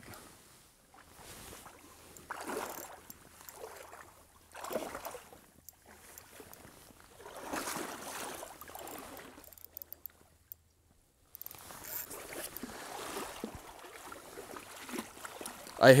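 Shallow river water splashing in several bursts a few seconds apart, churned up by a wading angler and a hooked king salmon thrashing at his feet, with a moment of silence just past halfway.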